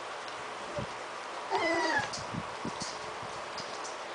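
A 3½-week-old puppy gives one short, high whine, about half a second long, about one and a half seconds in. Faint small knocks from the litter moving around are also heard.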